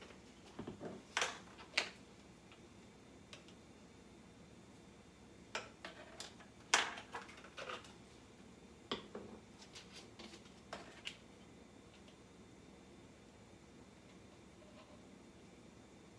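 Scattered light clicks and knocks of spice jars, their caps and a plastic measuring spoon being handled while seasonings are measured out, a couple about a second in and a cluster from about five to eleven seconds in.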